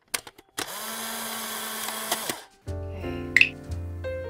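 A steady whirring hum like a small electric motor runs for about a second and a half, then cuts off. About two and a half seconds in, background music with held keyboard notes and a steady bass begins.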